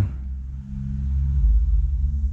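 A low, steady mechanical hum over a deep rumble that swells about halfway through.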